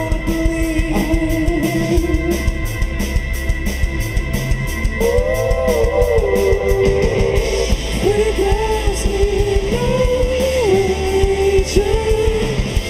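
An art-rock band playing live on electric guitars and drum kit, with a man singing a melodic line that comes in about five seconds in.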